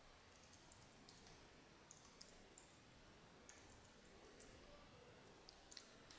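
Near silence with faint, irregular computer keyboard clicks: a dozen or so soft keystrokes spread through the quiet.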